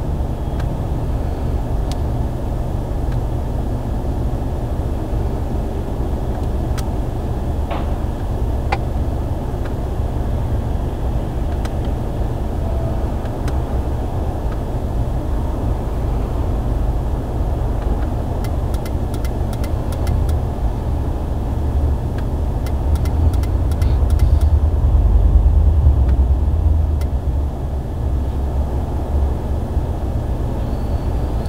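Steady low rumble of a running car heard from inside the cabin, swelling louder for a few seconds past the middle, with a scattering of light clicks.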